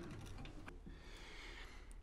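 Faint light clicks and knocks as a stainless tube bend in a plastic cutting fixture is handled and set into a bandsaw's vise, then only a soft hiss.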